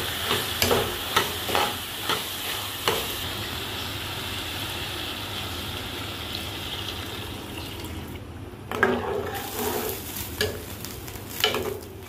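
A steel ladle stirring and scraping in a steel pot of frying potato, pea and tomato masala, clicking several times in the first three seconds over a steady sizzle. About eight seconds in the sizzle fades, and a few louder knocks and sloshes of the ladle in the watery curry follow.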